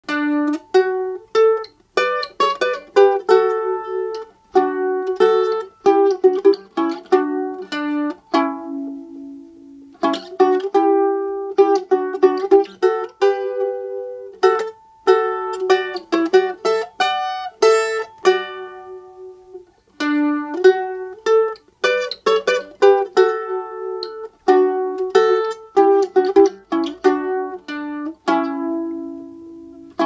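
Solo mandolin picked note by note, playing a slow song melody with a second voice beneath it, two notes often sounding together. The phrases end on notes left to ring out, roughly every ten seconds.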